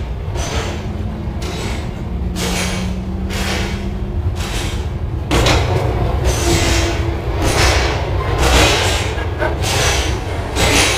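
Interior noise of a city bus on the move: a steady low rumble with repeated knocks and rattles from the body, and a faint motor whine for a couple of seconds. It gets louder about five seconds in.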